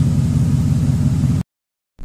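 Ford F-150's 5.4-litre Triton V8 idling steadily with a low, even hum, cut off abruptly about one and a half seconds in, followed by a moment of silence.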